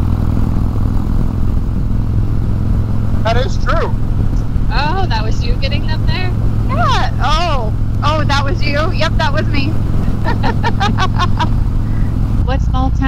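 Harley-Davidson Road King's V-twin engine running steadily at highway cruising speed, a constant low drone mixed with riding wind. Voices talk over it from about three seconds in.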